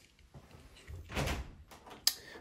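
An interior closet door being opened, its latch and swing giving a short rattle and knocks about a second in.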